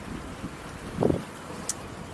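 Outdoor background noise with wind on the microphone, steady and low, with one short low sound about a second in and a faint click near the end.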